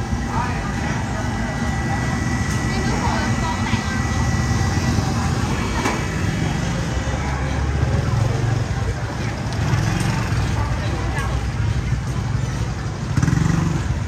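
Busy street-market ambience: background chatter of many voices over the low rumble of motorbike engines.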